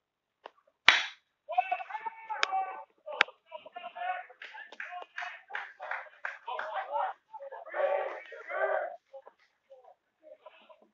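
A single sharp crack of a bat hitting a pitched baseball, the loudest sound here, about a second in. It is followed by voices shouting from the field and stands, with two smaller sharp snaps a second or two later.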